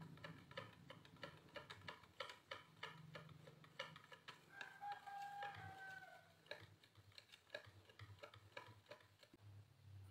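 A wire whisk stirs thin batter in a bowl, its wires ticking faintly against the bowl about three or four times a second. About halfway through, a rooster crows once faintly in the background, a long call that falls away at the end.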